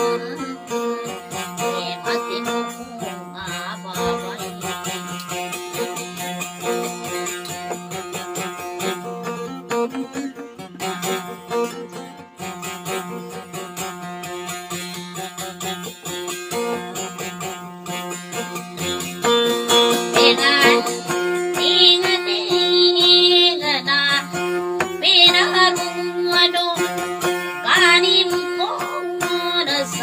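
Acoustic guitar played as accompaniment for a dayunday song. A woman's singing, with a strongly wavering pitch, comes in about two-thirds of the way through and continues over the guitar.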